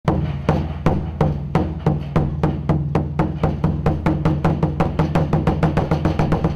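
A large Chinese barrel drum beaten with wooden sticks in a steady, gradually quickening series of strokes. Each stroke leaves a deep ringing tone that carries on into the next.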